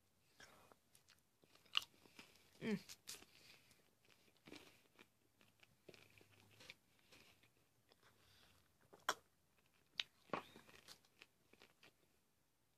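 Faint chewing of a Reese's Pieces candy egg, with scattered small crunches and a short hummed "mm" about three seconds in.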